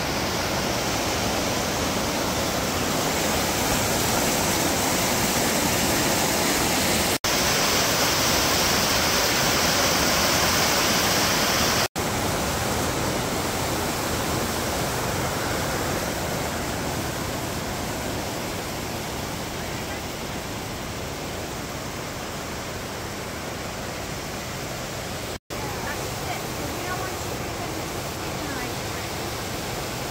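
Mountain creek rushing and cascading over boulders, a steady loud rush of water, with the sound cutting out for an instant about 7, 12 and 25 seconds in.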